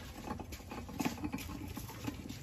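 Ceramic bonsai pot being turned by hand on a metal turntable: faint, irregular light clicks, taps and scrapes, a little louder about a second in.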